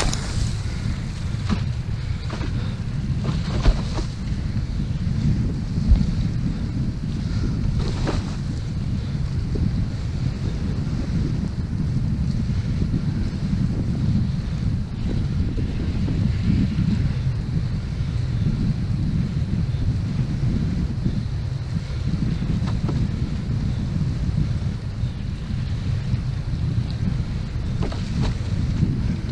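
Wind buffeting the microphone of a camera on a windsurf rig while sailing, a steady low rumble, with water washing past the board. A few sharp clicks sound in the first eight seconds.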